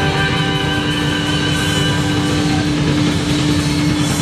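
Rock band playing live: electric guitar over drums, with one long held note.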